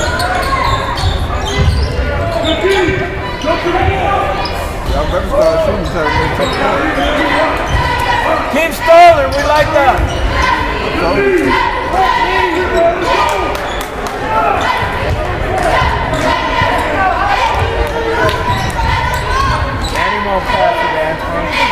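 Basketball game in a gymnasium: a ball dribbling on the hardwood court amid many spectators' voices echoing in the hall, with a sharp, wavering squeak about nine seconds in.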